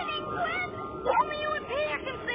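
Tinker Bell's high, squeaky chattering voice in a cartoon: a quick string of rising and falling chirps, over held music tones.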